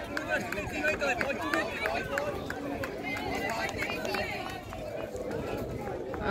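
Crowd of people talking and calling out over one another, a steady babble of voices with no single clear speaker.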